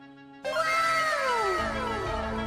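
A cat meowing: one long meow that starts abruptly about half a second in and falls in pitch, over background music.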